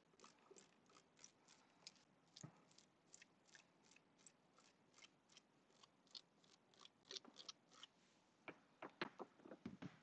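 Faint, quick taps of a paint brush dabbing paint through a stencil onto a painted cabinet, a few light dabs a second, coming thicker near the end.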